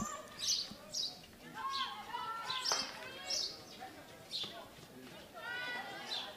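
Field hockey players' voices calling out on the pitch, heard at a distance, with one sharp crack about halfway through, typical of a hockey stick striking the ball.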